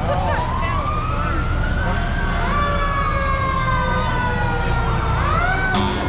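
Emergency vehicle sirens on slowly passing fire engines, several overlapping wails gliding up and down in pitch over a low engine rumble. A quicker rising sweep comes near the end.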